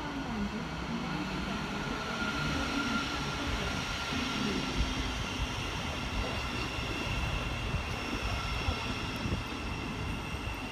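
Passenger train running on the line: a steady rumble with a faint high whine.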